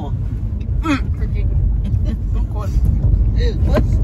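Steady low rumble of a car driving, heard from inside the cabin, with short bursts of voice and laughter about a second in and near the end.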